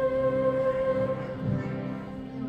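Devotional music with a held harmonium and keyboard chord that slowly fades, as at the close of a song. A low thud comes about a second and a half in.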